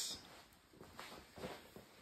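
Faint, soft footsteps and shuffling on a concrete floor, a few light scuffs over a quiet background.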